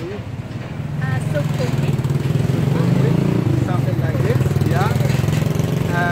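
A motor vehicle's engine running close by, starting about a second in as a steady low drone that is the loudest sound, with snatches of voices over it.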